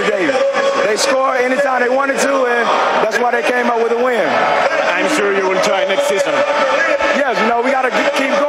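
A man speaking in a post-game interview: continuous talk over a steady background haze.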